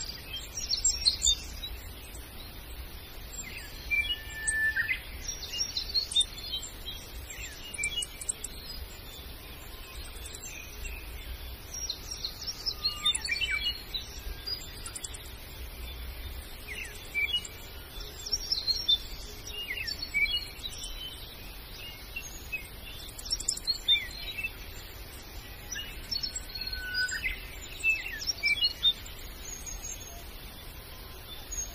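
Small birds chirping, with short calls scattered throughout, several falling in pitch, over a low steady rumble.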